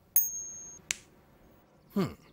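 A bright metallic ting, a coin-flick sound effect, ringing high for about half a second, followed by a short sharp click.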